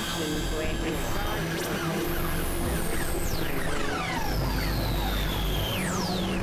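Dense layered experimental electronic music: high tones repeatedly gliding steeply downward over steady drones, with a deep hum coming in about two-thirds of the way through.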